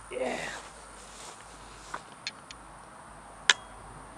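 A short vocal sound from a person near the start, then a few faint taps and one sharp click about three and a half seconds in.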